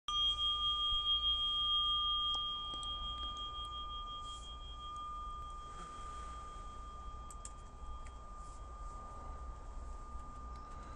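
A bell struck once, ringing with one clear tone and higher overtones; the overtones fade over several seconds while the main tone carries on.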